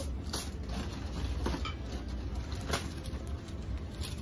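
Clear plastic packaging rustling and crinkling in a few short spurts as a bagged item is handled, over a low steady hum.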